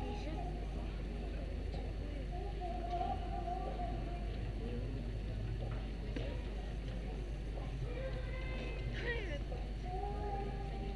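Indistinct chatter of people talking, with no clear words, over a steady low hum.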